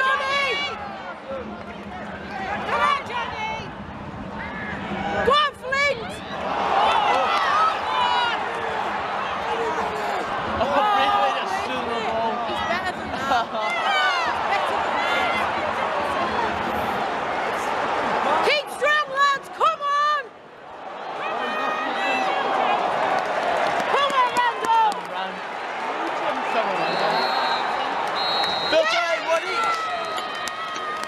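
Football crowd in a stadium stand: many voices shouting and calling at once, loud and continuous, swelling and easing, with a few short sharp strokes among them.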